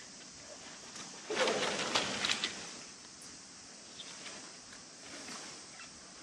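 Crinkling and rustling of a plastic tarp under a body shifting its weight on it, one burst of crackles lasting a little over a second.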